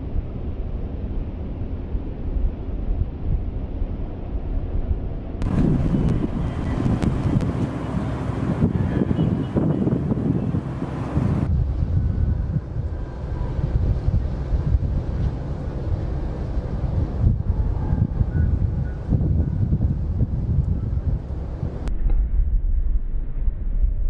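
Wind buffeting the camera microphone: a loud, low rumbling noise with no clear tones. About five seconds in it turns brighter and hissier, and about six seconds later it goes duller again.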